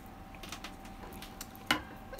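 Faint handling noise of badminton string being worked by hand at a racket mounted in a stringing machine: light scattered ticks and rustles, with one sharper click near the end.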